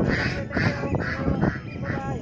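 Ducks quacking at a pond, about five short quacks in quick succession, roughly two a second.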